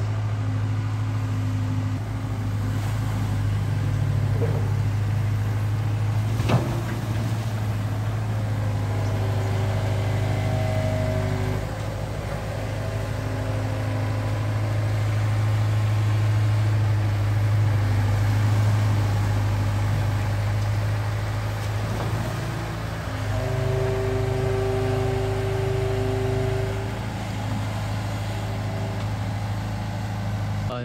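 Diesel engine of a pontoon-mounted long-reach Hitachi Zaxis excavator running with a steady low drone while the boom and arm work, with a higher hum that comes and goes as the hydraulics are loaded. There is a single sharp knock about six and a half seconds in.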